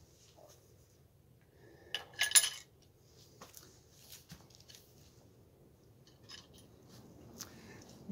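River cane shafts knocking and clattering together as they are picked through: a quick cluster of hollow knocks about two seconds in, then scattered lighter taps.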